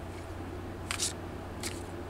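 A deck of tarot cards being handled and split by hand: two short papery swishes of the cards sliding, one about a second in and a shorter one near the end, over a steady low hum.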